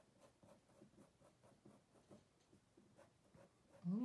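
Felt-tip Sharpie marker scratching on paper in many short, faint hatching strokes.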